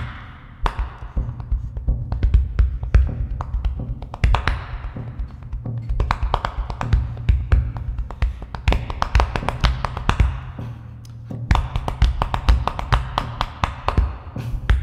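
Body percussion: hands slapping and tapping the chest close to a microphone in a fast, dense rhythm of sharp taps, thinning briefly about four and eleven seconds in. Low piano notes sustain underneath.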